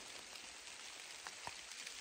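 Faint, even hiss of light rain, with a couple of soft drop ticks about a second and a half in.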